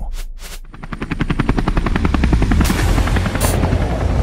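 An engine revving up: a rapid chain of firing pulses that speeds up over the first couple of seconds, then runs on fast. Two brief hissing bursts come near the end.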